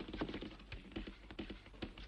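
A quick, irregular run of light knocks and taps, several a second.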